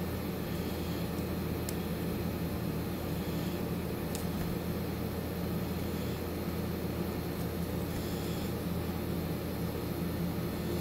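Steady low hum with an even hiss, typical of an air-conditioning unit running, with a couple of faint ticks.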